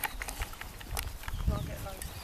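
Footsteps of a small group walking on a dry dirt path, heard as irregular sharp scuffs and clicks, with indistinct voices and a low rumble on the microphone.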